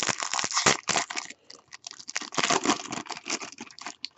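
Foil wrapper of a baseball card pack being torn open and crinkled by hand: a dense run of crackles with a short lull about a second and a half in.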